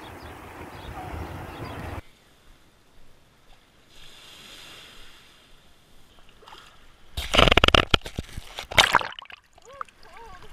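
Beach ambience with steady surf noise for the first two seconds, then quiet after a cut. About seven seconds in, shallow wave water sloshes and splashes loudly over a GoPro action camera held in the surf at the waterline, in ragged bursts for about two seconds.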